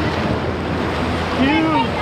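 Small surf waves breaking and washing up over the sand in the shallows, close to the microphone.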